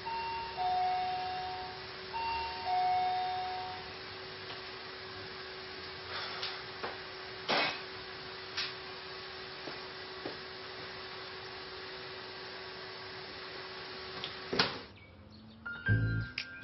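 Two-tone ding-dong doorbell rung twice, each time a higher chime falling to a lower one. Then come a few light clicks and knocks, and a sharp click near the end as the front door is opened.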